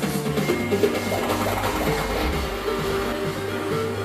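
Live DJ set of electronic dance music played loud through a club PA with JBL subwoofers and line arrays. A steady heavy bass line runs under sustained synth tones, with a denser swell of sound about a second in.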